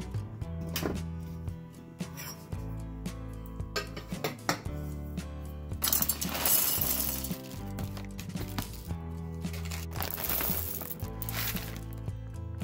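Background music with a steady beat, broken by two loud, rough bursts of an electric blade coffee grinder chopping coffee beans: the first about six seconds in, the second near the end.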